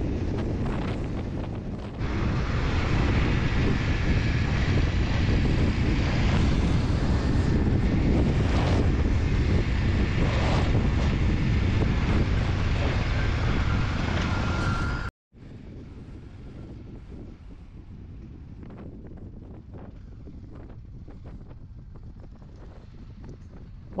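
Wind on the microphone over a dual-sport motorcycle's engine and tyres running down a gravel road, getting louder about two seconds in. It cuts off abruptly about fifteen seconds in, followed by a much quieter steady rumble.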